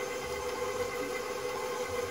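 KitchenAid Professional 550 HD stand mixer running at a steady speed, its motor giving a constant even hum as the beater turns through cake batter.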